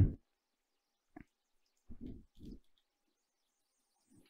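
Mostly near silence, with one short faint click about a second in and two soft, low hums a little after the two-second mark.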